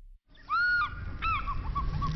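An eagle's cry as a sound effect: a long arching scream, a second shorter one, then a quick run of falling notes, over a low rumble.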